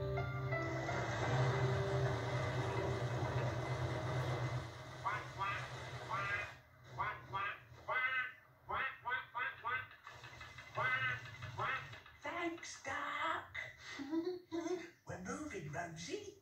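A narrowboat's Thornycroft marine diesel engine, just started, runs with a steady low hum and hiss for the first four or five seconds. From about five seconds in, the puppet characters chatter in quick, high-pitched voices. Everything is heard through a television's speaker.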